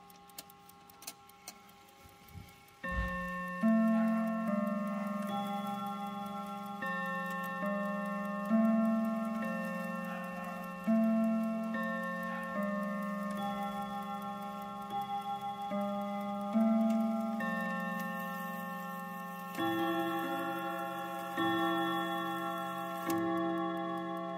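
Mantel clock's five-hammer rod-gong chime. A few light clicks, then from about three seconds in a long melody of single struck notes at several pitches, each ringing on and overlapping the next. The chime is working properly.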